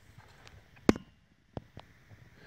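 A sharp click about a second in, followed by two fainter clicks close together near the end.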